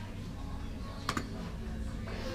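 Fruit machine playing its electronic music at a low level over a steady hum, with one sharp click about a second in.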